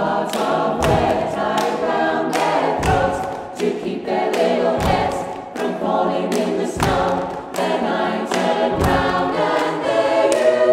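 Mixed-voice a cappella choir singing in harmony, keeping time with body percussion: hand pats on the chest and a low thump about every two seconds.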